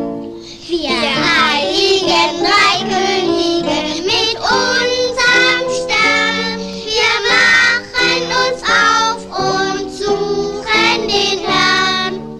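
A child singing a Christmas carol to piano accompaniment; the voice comes in about a second in over the piano chords.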